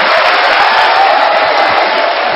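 Studio audience applauding and cheering, a steady dense clapping noise.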